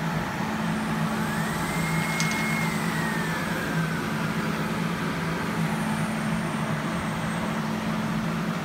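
Electronic roulette machine running with a steady mechanical hum. About a second in, a whine rises, holds briefly, then slowly falls away.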